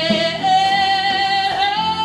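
A woman singing live, holding one long note that steps up slightly in pitch near the end, with her acoustic guitar accompanying underneath.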